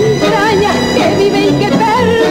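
Tango orchestra playing an instrumental passage between sung lines: a melody with a wide vibrato over the accompaniment.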